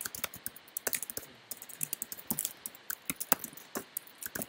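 Typing on a computer keyboard: a quick, irregular run of keystrokes with short pauses between bursts.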